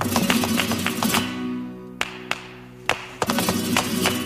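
Flamenco guitar ringing under sharp, rapid percussive strikes of zapateado footwork and palmas clapping. The strikes come in a dense flurry, thin to a few single hits in the middle, and pick up again near the end.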